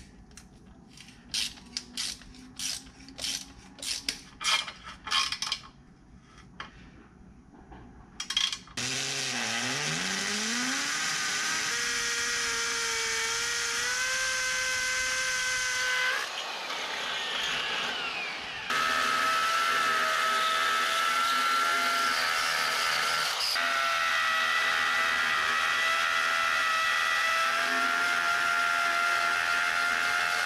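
A ratchet wrench clicking in short bursts as a bolt is tightened down on a winch mounting plate. About nine seconds in, a corded drill starts up, rising in pitch, then runs loud and steady as it bores into the concrete floor. It dips in the middle for a couple of seconds and then runs on.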